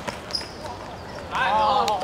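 A football kicked on an outdoor hard court, a sharp knock right at the start, followed by a boy's loud, high-pitched shout about a second and a half in.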